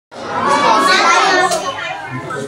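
Several children's voices talking over one another, loudest for the first second and a half, then dropping back.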